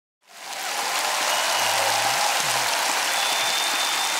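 A large congregation applauding. The applause fades in over the first half second and then holds steady, with a voice briefly heard among it.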